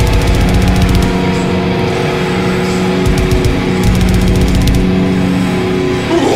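Death metal band playing live: distorted guitars and bass sustaining low chords over fast, dense drumming, with bursts of rapid cymbal hits.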